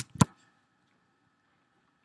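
A couple of sharp computer keyboard keystrokes right at the start, then quiet room tone.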